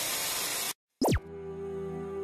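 Television-static hiss used as an editing transition, cutting off abruptly. After a brief silence there is a very fast falling sweep about a second in, and then gentle music with held notes begins.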